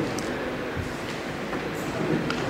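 Steady background noise of a large hall picked up through a desk microphone: an even rumbling hiss with no voice in it.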